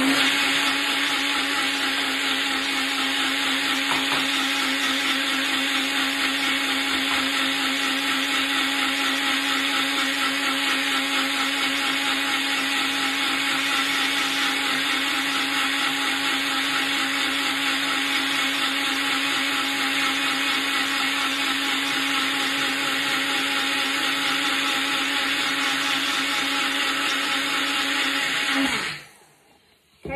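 Personal blender motor running steadily at full speed, blending oats and water into oat milk, with an even high whirr over a steady low hum. Near the end it cuts off and winds down.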